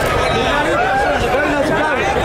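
Crowd chatter: many voices talking over one another at a steady level.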